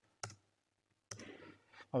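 Two quiet, sharp keyboard keystrokes, about a quarter second in and about a second in: a command being re-entered at a computer keyboard. The second keystroke is followed by a faint breath, and a spoken word comes at the very end.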